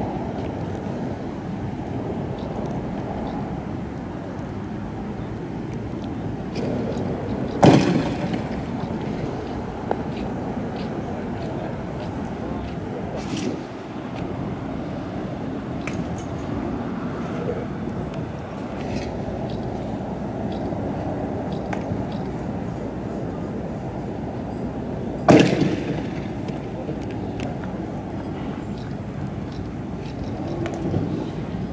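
Steady background noise broken by two loud, sharp bangs, the first about eight seconds in and the second about twenty-five seconds in, each leaving a short echo.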